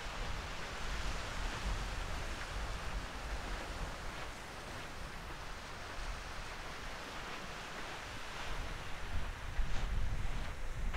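Steady wash of low surf with wind buffeting the microphone, the wind growing louder in gusts near the end.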